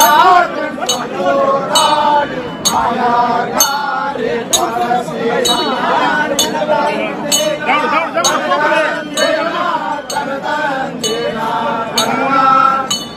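Sharp metallic clinks struck evenly about once a second, over a crowd of men chanting with long, held vowels.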